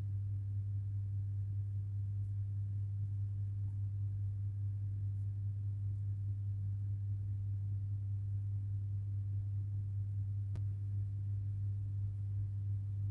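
Steady low-pitched electrical hum, a single unchanging tone, with one faint click near the end.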